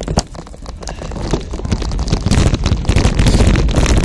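A 26-inch mountain bike rolling off down a loose dirt trail: tyres on the dirt, the bike and its mounted camera rattling over the bumps, and wind rumbling on the microphone. The noise builds steadily louder as the bike picks up speed.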